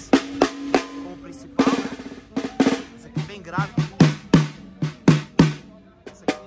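Sticks striking snare drums on a drum kit: a few single hits and a short roll, then, from about halfway, a run of about eight strokes on a lower-pitched drum whose note rings after each hit.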